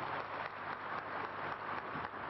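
Audience applauding steadily, many hands clapping in a dense, even patter.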